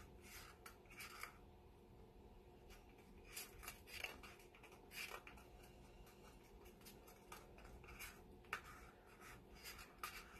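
Faint, scattered scrapes and light ticks of a wooden paint stick against thin plastic cups as acrylic pour paint is dribbled in, with the rustle of latex-gloved hands.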